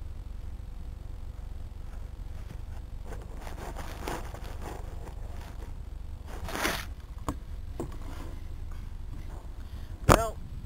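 Grass and leaves rustling and scraping against an RC glider's wing-mounted camera as the plane lies nosed into a hole in rough ground, in irregular bursts with a louder scrape about six and a half seconds in and a few sharp clicks just after, over a steady low hum.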